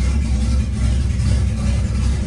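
Turbocharged VW Gol quadrado engine idling steadily with a low rumble while it warms up.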